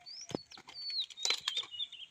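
A bird singing high whistled phrases that slide down in pitch, three times, over sharp snaps and rustles of cauliflower leaves being handled, with a dull thump about a third of a second in.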